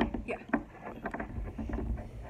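A few short clicks and knocks: one at the start, one about half a second in and a cluster around one second. They sit over a low rumble, with brief snatches of voice.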